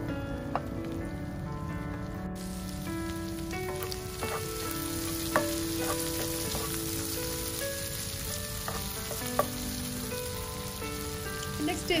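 Shrimp and garlic sizzling in butter in a nonstick frying pan as they are stirred with a silicone spatula. The sizzle gets brighter a couple of seconds in, and the spatula clicks sharply against the pan three times. A soft melody plays underneath.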